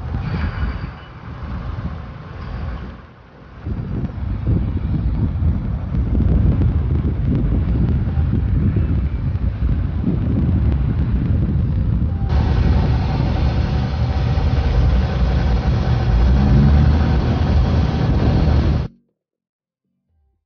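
Loud, irregular low rumble of outdoor harbour noise picked up on location footage, with no clear engine note. It dips briefly about 3 seconds in, changes at a cut about 12 seconds in, and stops abruptly near the end.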